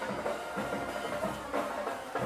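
Band music with drums playing in the stadium, picked up by the field microphones of a live football broadcast.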